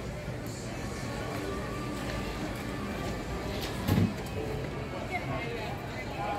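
Busy airport terminal ambience: background music with indistinct chatter of people passing, and a single thump about four seconds in.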